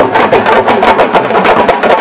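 Fast, dense drumming on sabar drums, many quick sharp strikes a second, over the noise of a big crowd.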